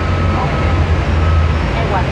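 Street traffic noise: a steady low rumble of vehicles, strongest in the middle, under a haze of city noise with faint voices.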